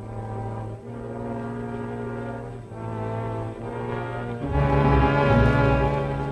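Orchestral music with sustained brass chords, swelling louder about four and a half seconds in.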